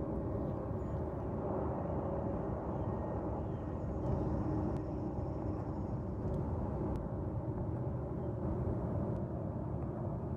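Wind buffeting the phone's microphone: a steady, uneven low rumble.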